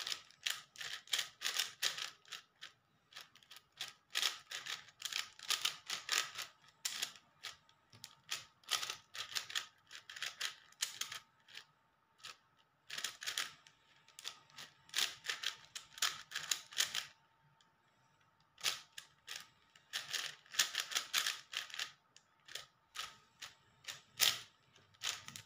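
Plastic speed cube being turned rapidly by hand: quick runs of clicking layer turns, broken by short pauses, one about halfway through and a longer one about three-quarters of the way in.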